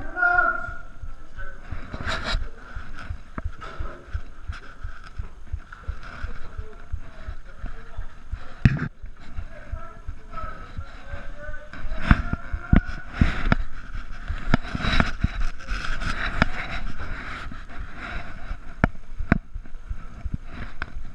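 Irregular footsteps on a gritty, debris-covered concrete floor with gear rustling close to a chest-mounted camera, and a single sharp knock near the middle.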